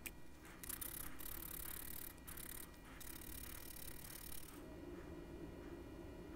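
A fine-toothed flush-cut saw cutting a thin wooden stick off flush with a wooden figurine, heard as several short stretches of high, hissy sawing with brief gaps. It stops about three-quarters of the way through, leaving a faint low hum.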